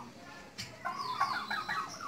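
Flock of domestic turkeys calling: a quiet start, then a dense burst of short overlapping calls from about half a second in until near the end.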